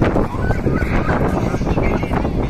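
Crowd of many people talking and calling out at once over a steady low rumble.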